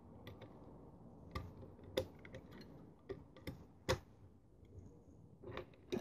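Faint, sparse metallic clicks, about a dozen over several seconds, from a lever pick and tension wrench working the levers of an ERA five-lever mortise lock as it is single-lever picked.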